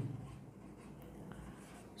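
Whiteboard marker writing on a whiteboard: faint, scratchy strokes with light squeaks as a word is written out.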